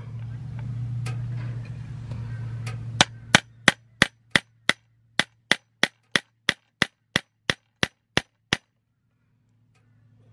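A spring-loaded automatic centre punch snapping repeatedly against an aluminium awning pole: a fast run of about seventeen sharp metallic clicks, roughly three a second, starting about three seconds in after a low steady hum.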